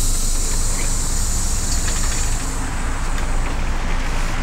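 Interior noise of a running city bus: a steady low engine and road rumble, with a strong hiss that starts suddenly at the beginning and fades away over about two and a half seconds.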